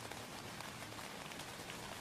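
Steady rain falling on tent fabric: an even hiss with faint ticks of single drops.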